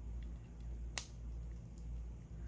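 A single sharp snip about a second in: jewelry cutters trimming the tail of nylon cord close to a finished knot.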